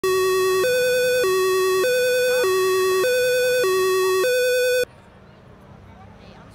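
Two-tone emergency siren, alternating a low and a high note about every 0.6 s at a loud, steady level. It cuts off suddenly about five seconds in, leaving faint outdoor background noise.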